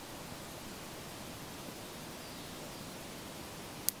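Steady, faint hiss of the recording's background noise in a pause between spoken phrases, with a small click near the end just before the voice comes back.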